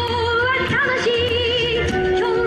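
Yosakoi dance music playing loudly over a loudspeaker: a melody of held, wavering notes over a steady percussive beat.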